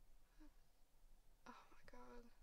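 Near silence inside a car, with a woman's quiet, breathy voice starting up faintly about one and a half seconds in.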